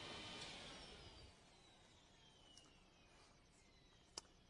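Near silence: faint room tone that drops away about a second in.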